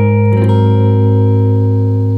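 Clean-toned jazz archtop guitar letting a low chord ring out, with further notes added about a third of a second in, the chord sustaining and slowly fading.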